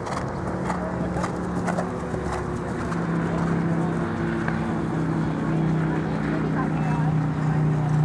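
A horse cantering on turf, its hoofbeats sounding as scattered soft knocks in the first couple of seconds, over a steady low mechanical hum and background voices.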